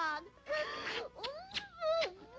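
Wordless cartoon voice cries: a short falling wail, a brief noisy burst about half a second in, then a long moan that rises and falls in pitch.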